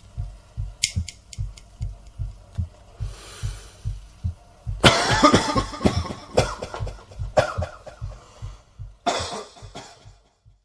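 A man coughing hard in several fits: a long run of harsh coughs about halfway through, then single coughs twice more near the end, a smoker's cough after a cigarette. Under it runs a steady low thumping pulse, about three beats a second, with a few sharp clicks early on.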